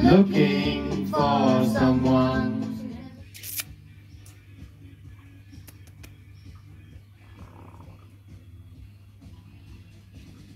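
Karaoke singing over a backing track, which ends about three seconds in. After that, a much quieter background with a few sharp clicks.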